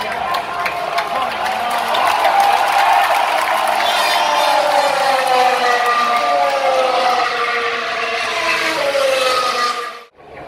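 Formula 1 cars' turbocharged V6 engines passing at racing speed, several engine notes overlapping and falling in pitch as the cars go by and draw away.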